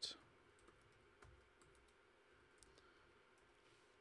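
Faint computer keyboard keystrokes, a scattering of light, irregular clicks as a line of code is typed.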